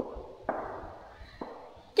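Three light taps: one at the start, one about half a second in and one near a second and a half in. Each is followed by a short fading ring.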